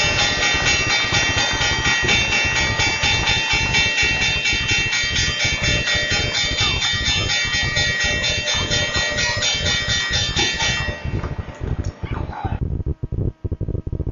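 Background music: a sustained high chord held over a steady low beat. The chord fades out about eleven to twelve seconds in, leaving the beat on its own.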